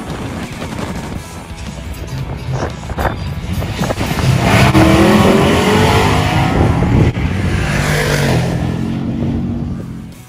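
Drag-race launch and pass of a 1965 Chevy Nova wagon: the engine builds to full throttle about four seconds in, rising in pitch as the car accelerates down the strip, then fades near the end. The car leaves from idle with timing pulled back to help its small street tyres hook on a poorly prepped surface.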